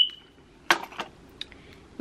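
Small plastic glue bottle and cap being handled: a sharp click with a brief high ring at the start, then two light clicks about a second in and a faint tick after them.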